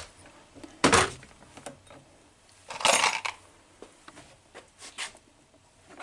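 Small metal parts clinking and rattling: a sharp clink about a second in, a longer rattle around three seconds in, then a few light ticks.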